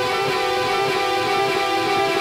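Electric guitar, a Telecaster, played through a Line 6 Helix chain of dozens of stacked delays: quick picked notes pile up into a dense, sustained wash of overlapping repeats.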